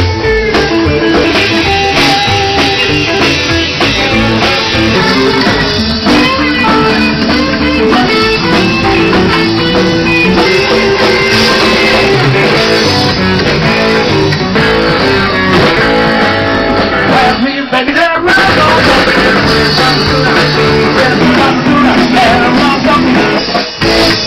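Live blues band playing loud, with guitar prominent, in a passage with no words. The music briefly drops out about three-quarters of the way through.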